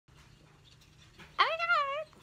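Faint room hum, then a woman's high-pitched, drawn-out exclamation starting about one and a half seconds in.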